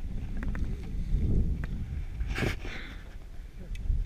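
Low, steady rumble of wind and motion noise on the camera microphone as the mountain bike rolls to a stop on a dirt trail, with a brief mumbled word a little past halfway.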